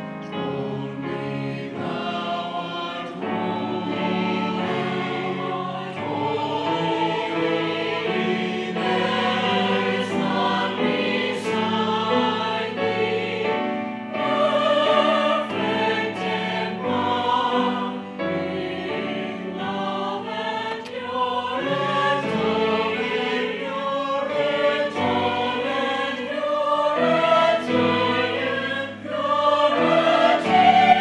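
Church choir singing in harmony, several voice parts holding chords that change every second or two.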